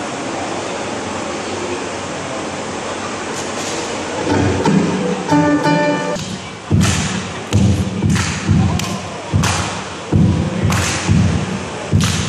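Ukulele played live through an amplifier: after a steady hiss, a few plucked notes ring out about four seconds in, then the player strikes the ukulele's body to beat out a steady percussion rhythm of deep thumps and sharp slaps from about six seconds in.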